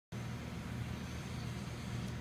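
Steady low hum with a faint hiss: the background noise of an indoor ice arena, with no distinct events.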